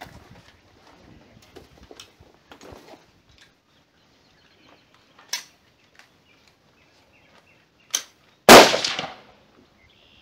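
Rifle shots on a firing line. Two sharp cracks come about five and eight seconds in, then a much louder, closer shot half a second later with a short echoing tail.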